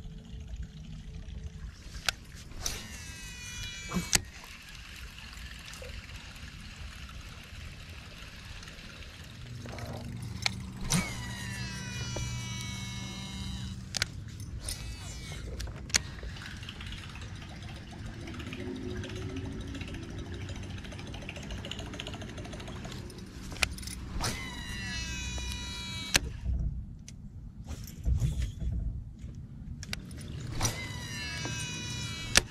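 Three casts with a baitcasting reel, about 2, 10 and 24 seconds in. Each is a click, then the spool's whine falling in pitch as it slows over a second or two, then another click as the reel is engaged for the retrieve. A low hum runs underneath.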